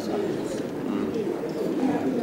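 Indistinct conversation: several men's voices talking over one another around a dinner table, with no single clear speaker.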